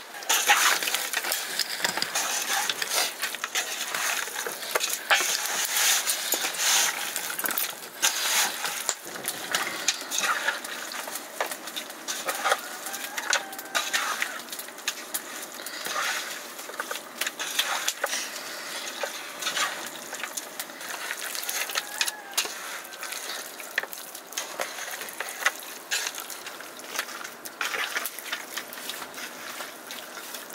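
Raw buffalo meat being mixed by hand in an aluminium pot: irregular wet squelching with small clicks and knocks.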